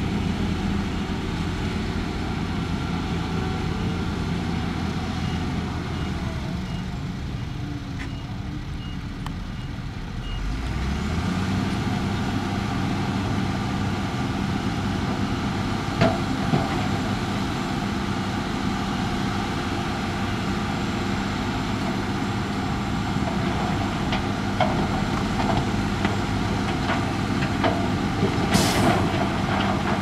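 Heavy diesel dump truck engine running, with a faint, evenly spaced reversing beeper for the first nine seconds or so. About ten seconds in, the engine speeds up and holds as the tipper bed is raised, and over the last few seconds knocks and clatter of rock come from the tipping load, with a short burst of hiss near the end.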